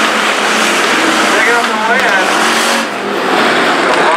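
Dirt-track hobby stock race cars' engines running at racing speed, with one car passing close by and the rest of the field heard further off around the oval.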